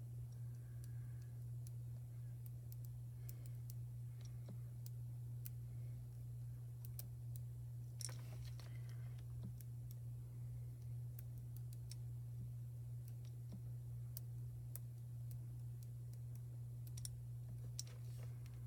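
Faint, scattered small clicks and ticks as the tip of a heated pen-style fuse tool is drawn and pressed over foil laid on heat transfer vinyl, over a steady low hum. A short cluster of clicks comes about eight seconds in.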